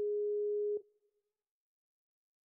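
Skype outgoing-call ringback tone: a single steady beep just under a second long, which cuts off sharply. The call is ringing and has not been answered.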